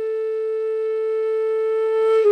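Background flute music holding one long, steady note.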